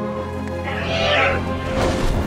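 A screeching creature cry from the hippogriff, a film sound effect, rises over a steady orchestral film score about half a second in. A short whoosh follows near the end.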